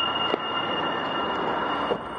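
A passing train: a steady hissing rumble with a steady high-pitched whine over it, and one brief click about a third of a second in.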